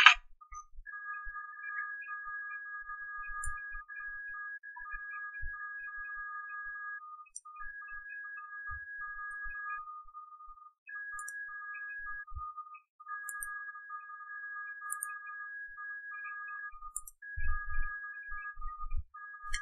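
Two steady, thin electronic tones a little apart in pitch, sounding together and cutting out and back in at irregular moments, with a few faint ticks.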